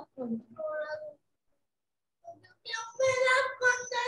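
A child's high-pitched, drawn-out voice, first briefly and then louder near the end, with about a second of dead silence between.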